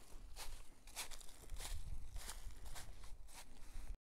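A person walking through dry leaf litter on a forest floor, about six footsteps at a little under two steps a second.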